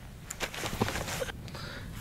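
A person moving about and handling things on the grass bank: a cluster of short rustles and scuffs starting about half a second in and lasting about a second.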